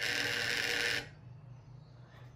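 Vibration alert of a xóc đĩa cheating detector, one steady buzz about a second long that cuts off sharply. A single buzz signals one colour missing, meaning an odd result (lẻ).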